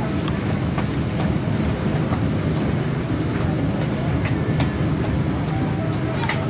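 Steady outdoor hubbub of a riverside crowd: many indistinct voices over a constant low rumble, with a few scattered sharp clicks.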